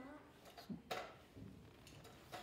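A child's voice finishing a sentence in a small room, then quiet room tone broken by one short click about a second in.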